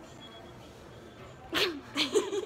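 Low shop background, then about a second and a half in one sudden, breathy vocal burst from a person, falling in pitch.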